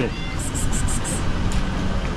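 Steady low rumble of street traffic, with a quick run of about six faint high ticks about half a second in.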